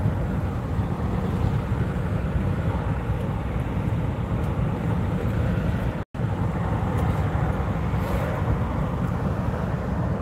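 Steady road and engine noise of a moving car, heard from inside the cabin as a continuous low rumble. It cuts out completely for a moment about six seconds in.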